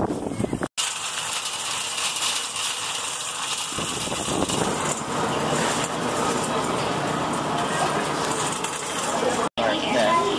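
Metal shopping cart rolling across a smooth concrete store floor, its wire basket and wheels rattling steadily. The sound starts abruptly about a second in and cuts off near the end.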